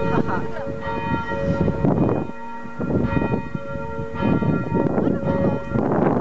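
Church bells ringing, struck about once a second, their overlapping tones humming on between strikes.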